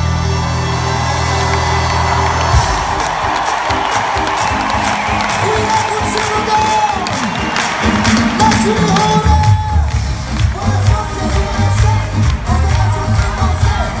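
Live band in an arena: a held low chord rings out and stops about two and a half seconds in, the crowd cheers and whoops, and a new song starts with a pulsing bass beat near the end.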